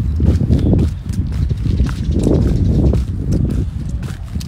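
Footsteps of a person walking, over a heavy low rumble on the handheld phone's microphone.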